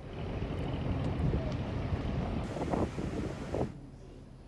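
Wind rumbling on the microphone at the seashore, with the sea in the background. It fades out near the end.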